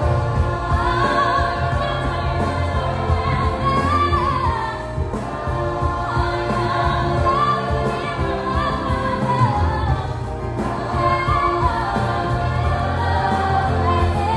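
A group of teenage voices singing a musical-theatre song together, with musical accompaniment and a steady bass line underneath.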